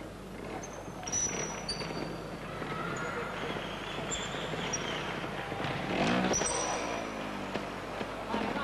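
Trials motorcycle engine idling and blipping as the rider balances on the obstacles, with one rising-and-falling rev about six seconds in. Behind it is the murmur of the indoor arena, with several short high whistles.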